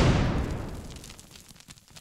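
Explosion sound effect: a sudden boom at the start that dies away over about a second and a half, with scattered crackles as it fades.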